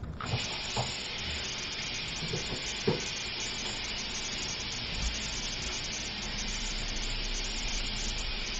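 Bathroom sink faucet turned on and running steadily while hands are washed under the stream, with a few light knocks in the first three seconds.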